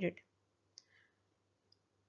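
The last of a spoken word, then near silence broken by one short faint click a little under a second in.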